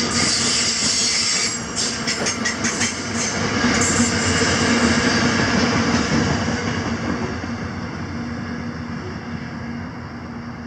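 A freight train of grain hopper wagons rolling past, with a run of wheel clicks about two to four seconds in. As the last wagon goes by, the rumble fades steadily away.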